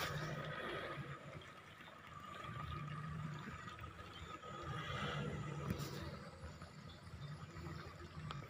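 Pickup truck engine running and revving in repeated swells over rough ground, with a steady high whine.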